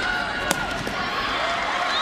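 Steady stadium crowd noise with one sharp knock about half a second in, a soccer ball being kicked during open play.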